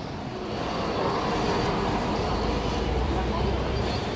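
City road traffic: a steady low engine rumble from heavy vehicles on the road, growing louder about half a second in, with faint voices of passers-by.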